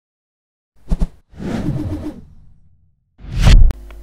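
Whoosh transition sound effects: a short swish about a second in, a longer one that fades away, then a loud rising whoosh near the end.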